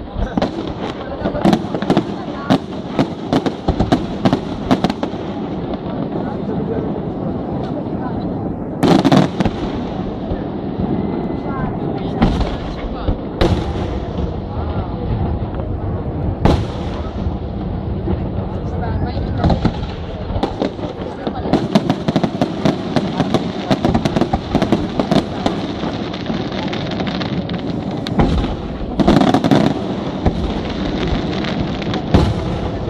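Aerial fireworks display: shells bursting in quick succession, with several heavy booms spread through and dense runs of crackling near the start and toward the end.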